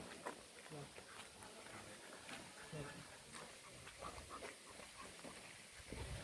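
Faint, distant voices of people talking, with scattered small clicks and rustles.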